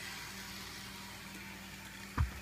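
Faint, steady hum of a model trolley's small electric motor running on a toy train track loop, over a light hiss.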